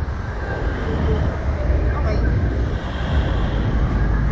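Wind rushing over the on-board microphone of a Slingshot reverse-bungee ride capsule in motion: a loud, steady low rumble and hiss.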